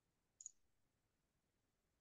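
Near silence with one faint, short click about half a second in, a computer mouse button clicked to advance the slide.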